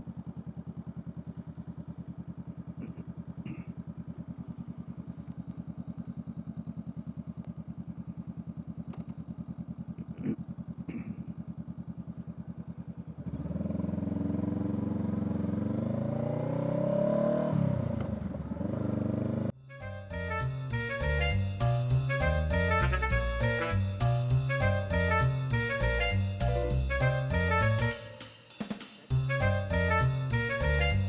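Honda Rebel 500 parallel-twin engine idling steadily in neutral, then revving up as the bike pulls away about 13 seconds in. About 20 seconds in it is replaced by background music with drums.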